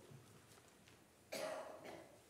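A single short cough about a second and a half in, over otherwise near-silent room tone.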